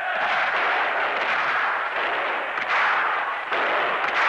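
Street-riot noise from archival film: a loud, dense, rushing roar of blasts, with a couple of sharper cracks in the second half, as of tear-gas grenades and explosions going off amid smoke.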